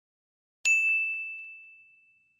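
A bell ding sound effect for a subscribe-button animation: one clear ring about half a second in, fading out over about a second and a half.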